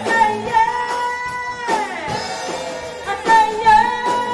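Live rock band playing: a woman singing lead over electric guitar, bass, drums and keyboard, with long held notes.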